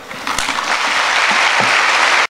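Audience applauding, swelling over the first second into steady, full clapping.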